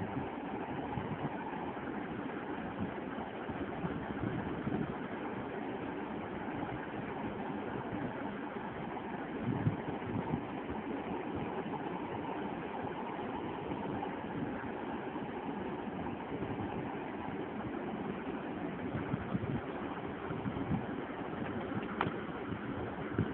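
Steady background noise with a few faint clicks.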